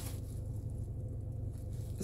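Steady low hum inside a car cabin.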